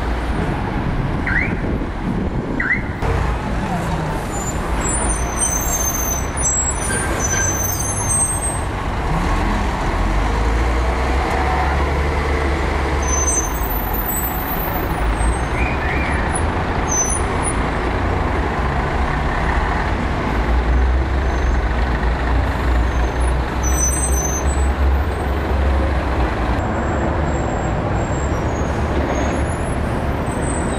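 Diesel engines of double-decker buses running as they pull past at close range amid town-centre traffic, a steady low rumble that swells twice as buses go by, with short high chirps heard now and then above it.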